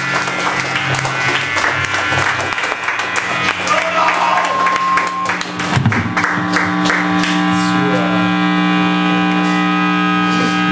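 Live band playing loud: an electric guitar through amplifiers holds sustained, droning tones while a drum kit beats out dense cymbal and drum hits. The drum hits thin out about eight seconds in, leaving the held guitar tones.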